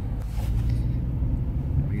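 Steady low engine and road rumble of an Opel car, heard from inside the cabin as it pulls away in first gear under light throttle.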